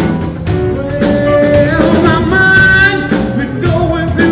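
Live blues-rock band playing: an electric guitar holds sustained, bending lead notes with vibrato over bass and a drum kit.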